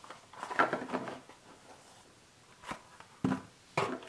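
Small plastic dropper bottles being pulled out of a corrugated-cardboard holder with a rustle and scrape of cardboard, then three light knocks as bottles are set down on a table in the second half.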